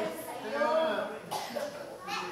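A person coughing once amid indistinct voices of people talking.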